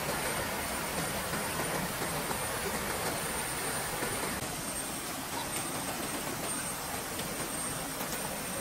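Steady rush of a small cascade pouring over rocks into a stream pool.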